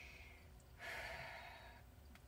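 A woman taking a deep breath and letting it out in a soft, long sigh about a second in.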